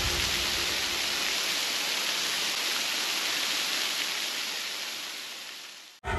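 Waterfall: water spilling in thin streams down a mossy rock face, a steady rushing hiss that fades out over the last couple of seconds.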